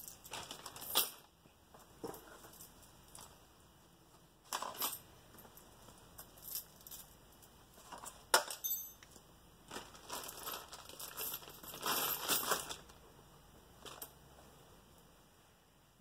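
Loose coins clinking as they are handled and dropped into a plastic zip-lock bag, with some crinkling of the bag. The clinks come in short clusters with quiet gaps between them; the sharpest single clink is about eight seconds in, and the longest cluster is around ten to twelve seconds in.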